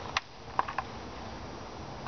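Sharp metallic clicks of needle-nose pliers prying at a stuck PCV valve in its valve-cover grommet: one click just after the start, then a quick cluster of three or four a little over half a second in.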